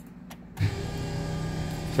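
A couple of light clicks, then about half a second in a small electric motor starts up and runs with a steady, even whir as the car's ignition is switched on.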